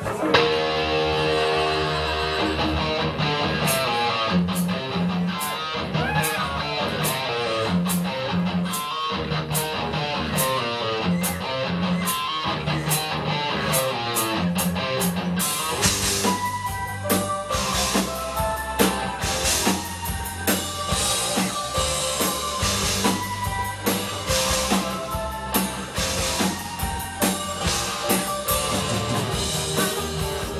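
Live rock band with drum kit, electric guitar, keyboards and bass starting a song together, with a steady drum beat throughout. The band comes in abruptly at the start, and the sound fills out with heavier bass about halfway through.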